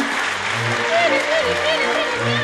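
Live operetta stage recording: the theatre orchestra plays a light accompaniment over a pulsing bass line, with a wavering vibrato melody near the middle, while the audience applauds and a voice sounds over it.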